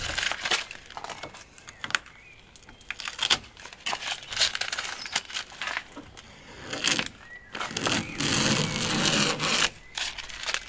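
Blue painter's tape being peeled off a van's painted door and sill in several short pulls, with crinkling as the used tape is bunched in the hand; a longer steady peel near the end.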